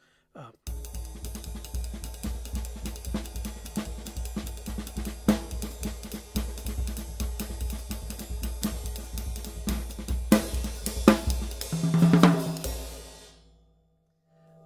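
Drum kit played in a fast Brazilian samba pattern, led by a late-1960s Paiste 602 18-inch flat ride cymbal over a steady bass-drum pulse. It starts under a second in and ends with an accented hit a couple of seconds from the end that rings and fades away.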